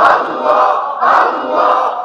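A congregation of men chanting "Allah" together in Sufi zikr, a steady rhythm of about two chants a second.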